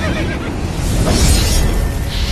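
Horse whinny sound effect over a deep, continuous cinematic rumble and music, with a rushing hiss swelling about a second in.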